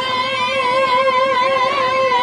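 Shehnai (double-reed pipe) playing Chhau dance music, holding one long high note with a wavering vibrato.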